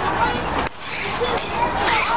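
Several high-pitched voices shouting and calling out over one another. There is a sharp click about two-thirds of a second in.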